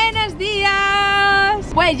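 A woman's voice singing one long held note, gliding up into it and then dropping away, with a couple of short sung syllables near the end. A low rumble of the moving motorhome runs underneath.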